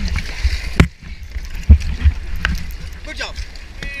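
Water moving around kayaks with a steady low rumble of wind on a helmet-mounted camera. Several sharp knocks come about a second apart.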